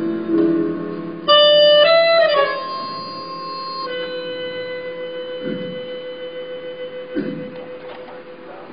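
Live stage music with slow sustained notes. About a second in, a loud high note sounds, then slides down into one long held note that slowly fades.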